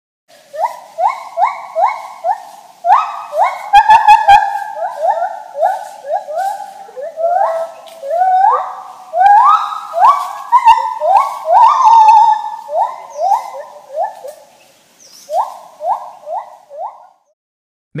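Gibbon song: a long series of clear whooping notes, each rising in pitch, about three a second, with a brief pause near the end.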